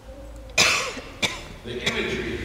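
A person coughing: one loud cough about half a second in, followed by two shorter, sharper coughs.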